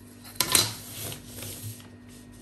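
A long metal ruler set down on paper over a table: a sharp clack about half a second in, followed by a second or so of rustling and sliding as it is positioned on the pattern paper.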